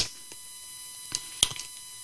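Faint steady electrical hum with thin high tones, broken by three soft clicks, heard while a call is being picked up on a broadcast line.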